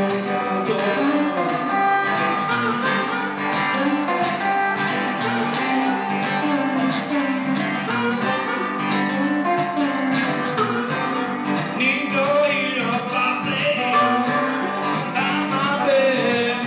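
Live blues played on electric guitar, with harmonica held cupped to a microphone playing sustained notes over the guitar.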